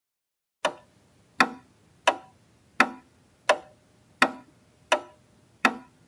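Eight sharp, evenly spaced ticks, about three every two seconds, each dying away quickly, with dead silence between: a ticking sound effect.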